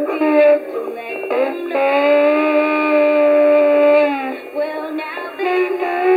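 A young girl singing into a toy karaoke microphone, her voice coming through its small speaker, thin and without bass. She sings a short phrase, then holds one long steady note for about two seconds before starting the next phrase.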